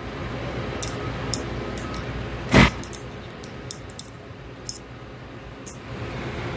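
Faint, scattered small metal clicks of a pick working an O-ring out of the pinion bore of a pneumatic actuator body, with one louder knock a little past halfway, over a steady background hum.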